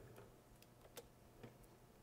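Near silence: room tone with a few faint clicks, the clearest about a second in.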